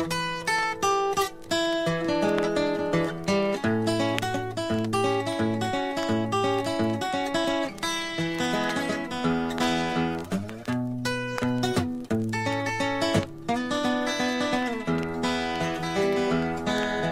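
Instrumental break in a country blues song: acoustic guitar picking a lead of quick notes, with longer held notes and chords underneath.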